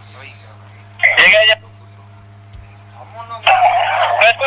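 Steady low electrical hum in a pause of a relayed police-radio recording, broken about a second in by one short, loud, high-pitched cry, with voices resuming near the end.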